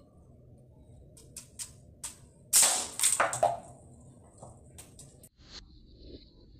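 Homemade popsicle-stick rubber band gun firing: a few light clicks as the trigger mechanism is worked, then a loud snap about two and a half seconds in, followed by a second clattering burst as the projectile strikes and knocks over a plastic cap target. A few small knocks follow.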